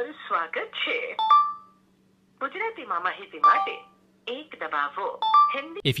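Telephone-line audio from a call playing over a smartphone's loudspeaker: a voice, in three short spells with brief steady tones among them, over a steady low hum.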